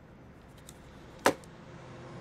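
A single short, sharp knock a little over a second in: the plastic cordless-phone keypad being set down on a wooden table.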